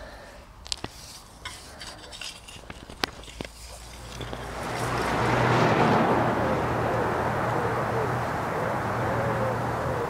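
Soft scraping and small clicks of hands and a hand fork working through dry soil while lifting potatoes. About halfway in, a louder steady rushing noise with a low hum rises and holds, covering the handling sounds.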